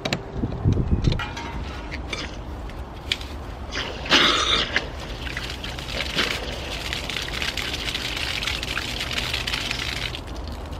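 A newly installed frost-free sillcock is opened: after a few light knocks and clicks, water comes on with a loud burst about four seconds in. It then pours in a steady stream, splashing onto the grass below as the new pipe fills.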